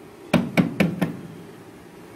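About five quick, sharp knocks against the bus's sheet-metal interior panel in the first second, close to the microphone.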